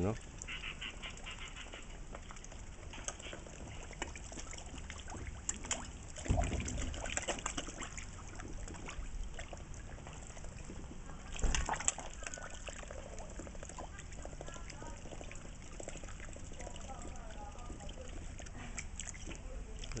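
Water splashing and slurping at a pond surface as koi crowd and gulp at the top while black swans dip their bills in among them, with a couple of louder thumps about a third of the way in and again just past the middle.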